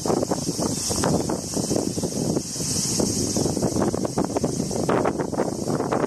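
Wind buffeting the microphone, with a steady high insect buzz that swells and fades underneath.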